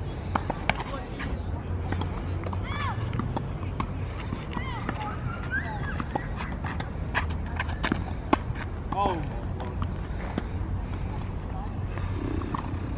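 Tennis rally: sharp pops of a tennis ball struck by rackets and bouncing on a hard court, irregularly every second or so, the loudest about eight seconds in. A steady low rumble runs underneath.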